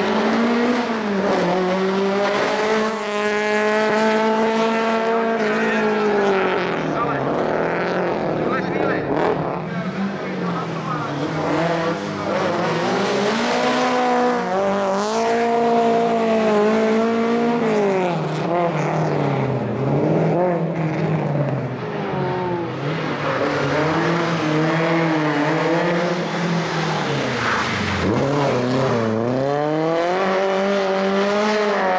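Lada VFTS rally car's four-cylinder engine revving hard, its pitch repeatedly climbing and then dropping as the car accelerates, shifts and lifts off for corners.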